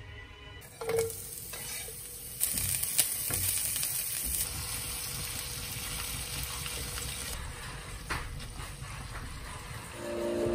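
Corned beef and onions sizzling in oil in a frying pan. A knock comes about a second in, and the sizzle grows louder about two and a half seconds in and eases off near the end, with a few light clicks.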